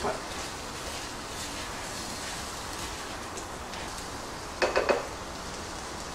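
Raw rice being stirred and toasted with oil and aromatics in a hot clay pot with a silicone spatula: a steady sizzle with the grains scraping and shifting. A short louder clatter of the spatula against the pot comes about four and a half seconds in.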